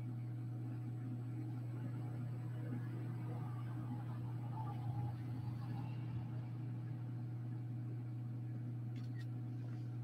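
Steady low machine hum, unchanged throughout, with faint soft handling noise of a silicone mold being turned over in the hands around the middle.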